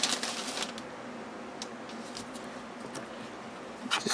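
Quiet handling of a paper-covered notebook and its paper band on a tabletop: a brief rustle at the start, then low room tone with a few soft taps.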